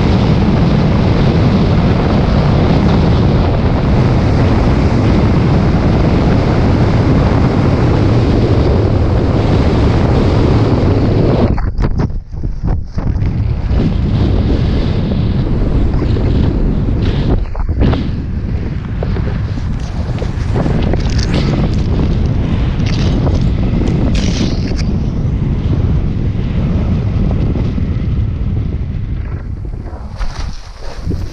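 Heavy wind rushing and buffeting over a helmet-mounted camera's microphone in wingsuit flight, a dense low rush that drops out sharply for a moment about twelve seconds in and again near seventeen seconds. Through the second half the wind is lighter and choppier, broken by many brief gusts.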